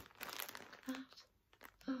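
A clear plastic zip-lock bag crinkling in the hands as a bundle of sari silk fibre is handled and drawn out of it, mostly in the first second, with a few sharp crackles after.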